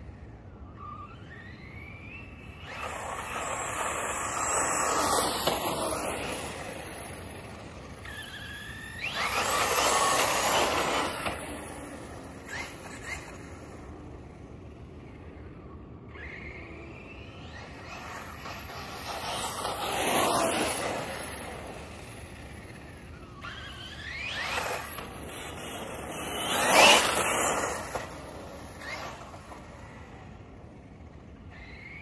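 A brushless electric RC car making repeated runs past the microphone on pavement: about five passes, each a swell of high motor whine and tyre noise with the pitch gliding as it goes by, the loudest pass near the end.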